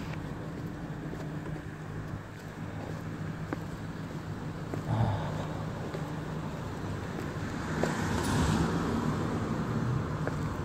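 A motor running with a steady low hum, with a louder rush of noise a little past the middle and near the end.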